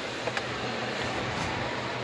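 Steady whoosh of an electric fan running, with a faint low hum under it and two faint clicks about a third of a second in.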